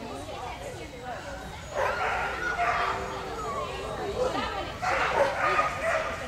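Dog barking in two short spells, about two seconds in and again about five seconds in.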